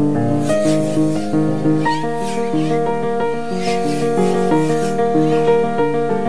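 Solo piano music: a steady stream of quick notes over held lower notes.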